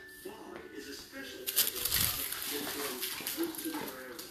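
Faint background voices from a TV or radio playing in the room, with rustling and scuffing about one and a half to two seconds in.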